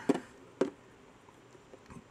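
Quiet room tone with two faint, brief clicks in the first second.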